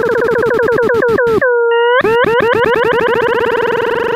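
Desmos graphing calculator's audio trace of the graph X = tan(x²): a synthesized tone with overtones that swoops in pitch over and over as each tangent branch is played. The swoops come fast, slow down and spread out toward the middle, where the tone holds steady for about half a second as it crosses the bowl near the origin, then come fast again.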